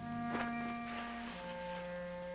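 Dramatic background music of sustained held notes, moving to a new chord a little past halfway.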